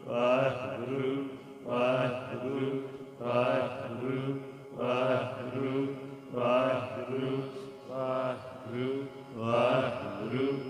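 Sikh kirtan: men's voices singing a short devotional phrase over and over, one phrase about every second and a half, over the steady drone of harmoniums.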